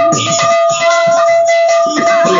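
Live kirtan music: a barrel drum beating and brass hand cymbals ringing over a steady held note.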